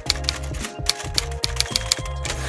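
Typewriter keys clacking in a quick run, about six strokes a second, over background music with a steady bass.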